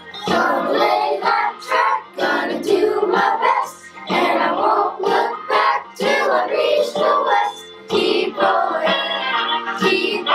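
Children's chorus singing a musical-theatre song over an instrumental backing track.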